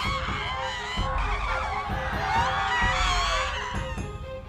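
Many bus passengers screaming in panic at once, overlapping high cries. Under them runs a dramatic score with a steady ticking pulse and low booms about once a second.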